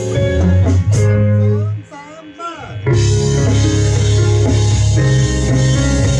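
Small rock band playing together: electric guitars, bass guitar, drum kit and keyboard. Around two seconds in the band drops out for about a second, leaving a few sliding, bent notes, then the full band comes back in.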